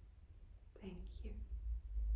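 A short, soft word or two in a low, whispered-sounding voice about a second in, over a low rumble that grows louder near the end.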